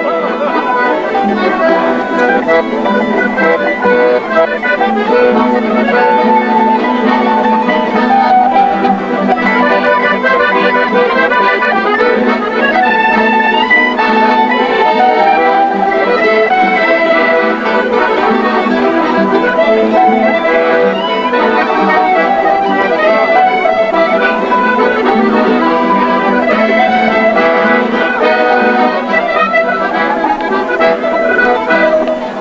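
Canarian folk group playing a traditional tune on accordion and strummed guitars together, steady and continuous.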